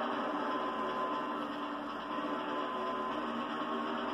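A steady background drone of several held tones, with a higher tone fading in and out a couple of times.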